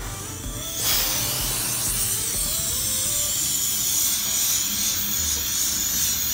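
Water spraying steadily onto a screen-printing screen to wash out the emulsion and open the design, a hiss that starts about a second in, over background music.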